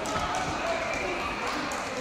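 Sports-hall background chatter: indistinct voices echoing around a large hall, with a few dull thuds on the mats.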